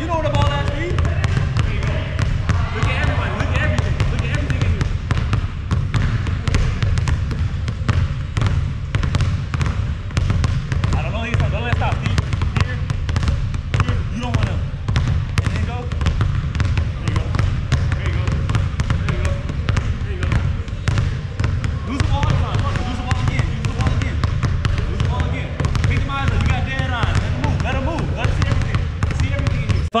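A basketball dribbled hard and fast on a hardwood gym floor, a quick continuous run of bounces, with voices in the background.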